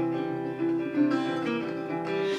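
Acoustic guitar (a Yamaha) playing chords, the notes ringing, with a few chord changes.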